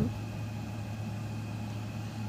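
A steady low background hum with a faint high tone above it, unchanging throughout.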